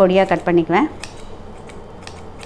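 A woman speaks briefly, then kitchen scissors snip pieces off a drumstick (moringa pod) over a steel plate, a few light clicks of the blades in the second half.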